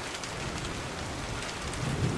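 Heavy rain pouring onto asphalt pavement: a steady hiss of drops splashing on the wet surface.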